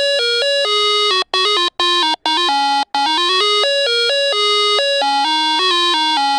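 Bright, buzzy electronic jingle: a single melody of quick notes stepping up and down, broken by a few short gaps about one to three seconds in.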